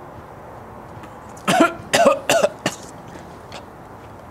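A man coughing in a quick run of four hard coughs starting about a second and a half in, after drawing on a cigarette: coughing on the inhaled smoke.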